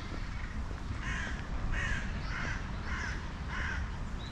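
A bird, crow-like, giving five short calls roughly two-thirds of a second apart, over a steady low rumble.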